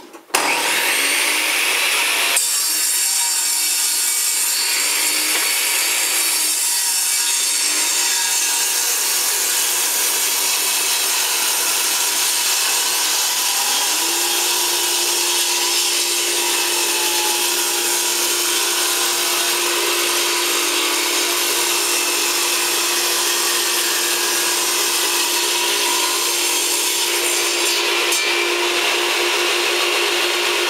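Bosch table saw starting up and then running steadily while a strip of dark hardwood is ripped through the blade. A steady tone joins the saw noise about halfway through.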